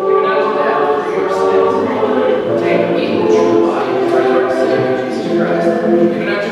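A hymn sung by a group of voices in held notes, with a choral, a cappella sound.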